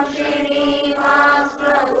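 A woman's voice chanting a Sanskrit verse in long, held notes, with a brief break for breath about three-quarters of the way through.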